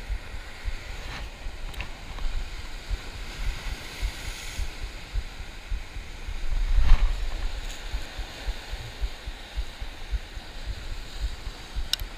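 Wind buffeting the microphone over the steady wash of ocean surf breaking on rocks below, with a louder rush about seven seconds in.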